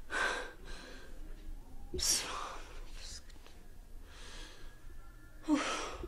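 A woman crying: a series of gasping, sobbing breaths with a few short voiced whimpers. The loudest gasp comes about two seconds in and another near the end.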